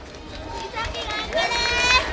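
Spectators shouting encouragement to runners in a sprint race, high-pitched held calls starting about a second in and growing louder.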